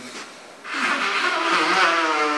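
A man's voice drawing out a long held hesitation sound, beginning under a second in after a brief lull, its pitch wavering only slightly.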